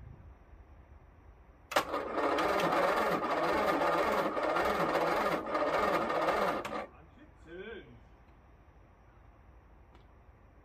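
Starter motor cranking the Rover P6 2000's two-litre four-cylinder engine for about five seconds, the note rising and falling evenly with each compression stroke. It stops suddenly without the engine catching, on a first start attempt after some 30 years laid up.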